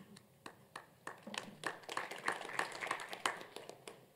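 Applause from a small audience: a few separate claps at first, building to steady clapping about a second in, then dying away near the end.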